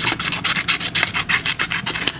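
Small pen-shaped scissors with stainless-steel blades snipping through a sheet of paper in a quick run of short cuts, about ten a second.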